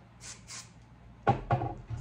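Two short hisses of an aerosol texture spray on the hair, followed about a second later by a cluster of soft knocks and handling sounds.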